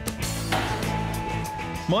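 Electric two-post car lift's motor running with a steady hum as it raises the car, a steady whine joining about half a second in.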